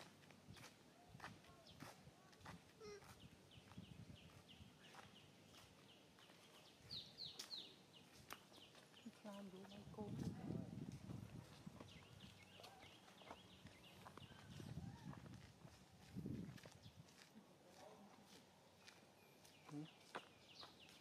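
Quiet outdoor ambience with small birds chirping in short, quickly falling notes, in clusters near the start and about seven seconds in, over scattered faint clicks and a few low rumbles.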